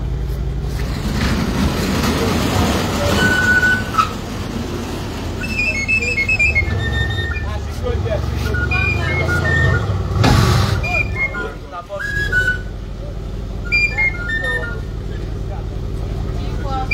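Mercedes-AMG C 63 convertible's V8 engine running with a steady low rumble that swells for a few seconds in the middle, with people talking and short whistle-like tones over it.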